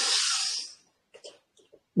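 A man's long audible in-breath, a breathy hiss that fades out under a second in, followed by quiet.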